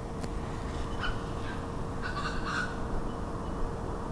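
A bird calling outdoors: a short call about a second in and a longer call around two seconds in, over a steady low rumble of background noise.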